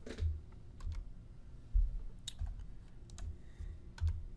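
A few scattered clicks of computer keys being pressed at a desk, mixed with soft low thumps; the loudest thump comes a little under two seconds in.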